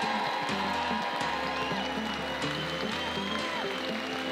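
Background music with a bass line that shifts note about every second, with audience applause under it.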